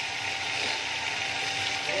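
Water running steadily into a storage tank, an even rushing hiss with no change.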